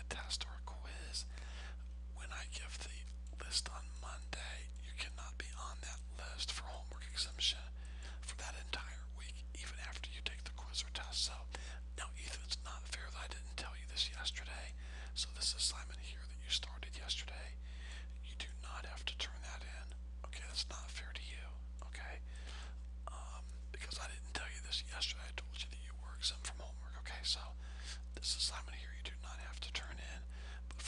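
A person's voice, faint and breathy like whispering, in short irregular bursts over a steady low electrical hum.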